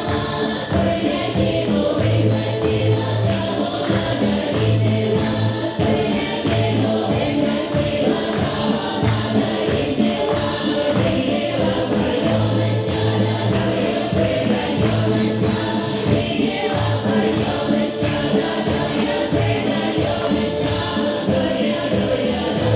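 Choir singing a Slavic folk song over instrumental accompaniment, with a steady beat in the bass, as music for a stage folk dance.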